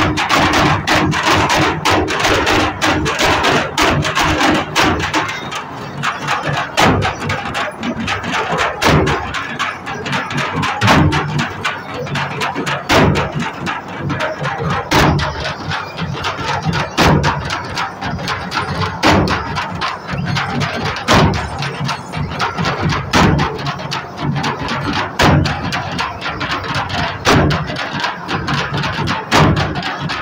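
Percussion drumming accompanying a Gond folk dance, a strong beat about every two seconds with lighter strokes between, over the chatter of a dense crowd.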